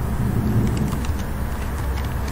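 Computer keyboard keys tapped in a quick run of light clicks over a steady low background hum.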